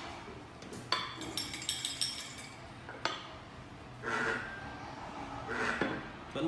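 Xóc đĩa tokens rattling and clinking inside a porcelain bowl shaken upside down on a porcelain plate, followed by a single knock as the bowl and plate are set down. About four seconds in comes a short buzz from the device's vibrating signaller, which signals an odd result.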